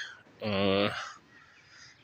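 A man's voice holding one drawn-out, wordless syllable for about half a second, followed by quiet.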